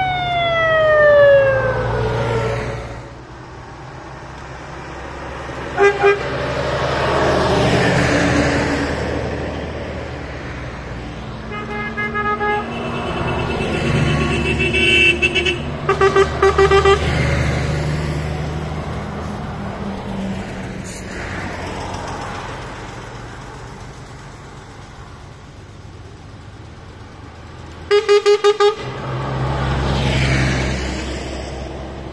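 Karosa 700-series buses driving past one after another, their diesel engines swelling as each goes by. A siren winds down in falling pitch at the start. Horn toots follow: a short pair about six seconds in, several blasts between about twelve and seventeen seconds, and a quick burst of four toots near the end.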